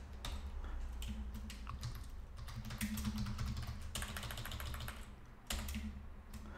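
Computer keyboard typing: irregular runs of keystrokes with short pauses, over a steady low hum.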